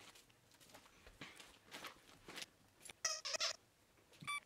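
Dog toys faintly shuffled and handled, then a squeaky dog toy squeaks briefly about three seconds in.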